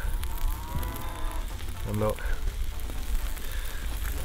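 Mushroom omelette frying softly in a pan over an open wood fire, with a steady low rumble underneath.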